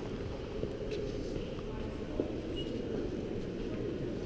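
Indistinct murmur of other visitors' voices over a steady low hum in a large museum gallery hall.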